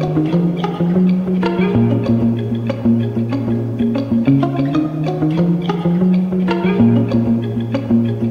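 Background music: a sustained bass line stepping between notes every couple of seconds, under a light, regular percussive beat.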